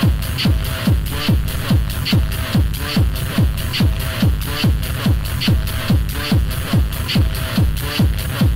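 Techno from a continuous DJ mix: a steady kick drum about two and a half times a second, each hit dropping sharply in pitch, with a higher tick between the kicks.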